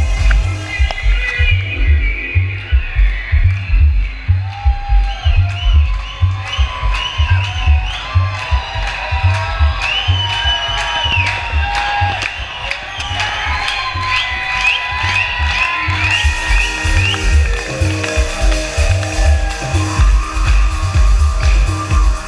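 Loud electronic dance music over a festival sound system, driven by a steady kick drum at about two beats a second with a synth melody above it. The top end is filtered away for a long stretch and comes back about three-quarters of the way through.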